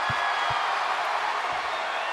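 Large arena crowd cheering, a steady wash of crowd noise.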